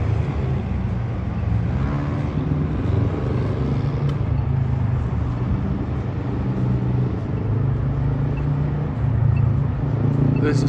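City street traffic: cars running and passing through an intersection, a steady low rumble of engines and tyres.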